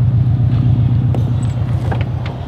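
Subaru WRX STI's turbocharged flat-four engine idling with a steady, low, pulsing rumble, with a couple of light clicks about a second in and near the end.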